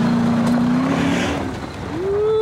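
Dodge Charger Pursuit launching hard on gravel: the engine is held at high revs while the spinning tyres throw gravel and dirt, then the sound fades about a second and a half in as the car pulls away.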